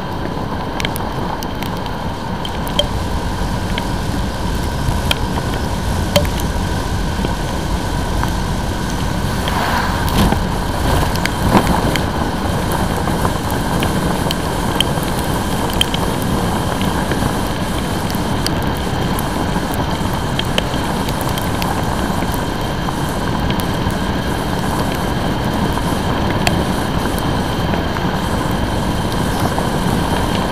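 Steady wind and road noise from a motorcycle riding in the rain on a wet road, heard through a helmet-mounted camera's microphone buffeted by the wind. Scattered sharp ticks of raindrops strike the camera.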